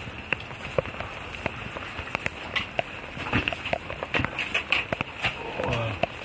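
Water dripping irregularly from the roof of a small underpass in many separate sharp drops, over a steady hiss of falling rain.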